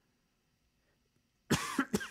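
A man coughing twice in quick succession, starting about a second and a half in after near silence.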